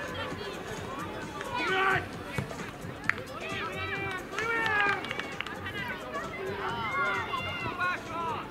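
Young boys' voices shouting and calling out on a football pitch during play, many short high calls overlapping. One sharp knock comes about three seconds in.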